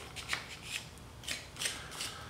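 Tungsten electrode tip drawn back and forth through the bristles of a small hand brush, a few short quiet scratching strokes about half a second apart, brushing dried chemical-sharpener residue off the tip.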